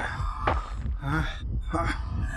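A man's pained groans and strained breaths, short and repeated about every half second, over a low, pulsing throb.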